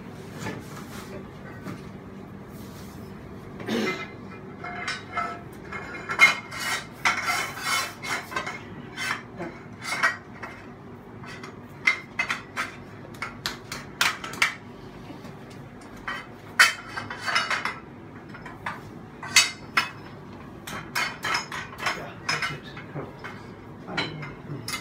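Galvanised steel support bars clanking and knocking against the metal clamp heads of rooftop equipment support legs as they are fitted, in irregular clinks and knocks of metal on metal.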